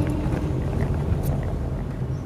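Car driving, heard from inside the cabin: a steady low rumble of engine and road noise. A held musical note from a song fades out about half a second in.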